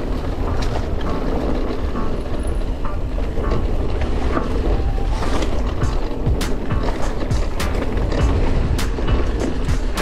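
Mountain bike rolling fast down a rocky trail: tyres grinding over stone, wind rumbling on the microphone, and a run of rattles and sharp clacks from the bike over the bumps, thickest in the second half.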